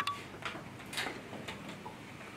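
A few light clicks, about one every half second, over quiet room tone.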